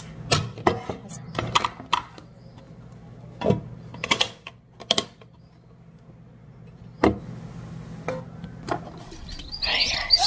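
Food storage containers being handled and closed: a series of separate clicks and knocks from a metal tin and a glass container's snap-lock lid, over a steady low hum. Near the end, birds chirping.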